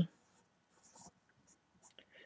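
Felt-tip marker writing on paper: a few short, faint scratchy strokes.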